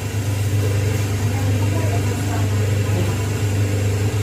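Semi-automatic hydraulic single-die paper plate machine running with a steady low motor hum.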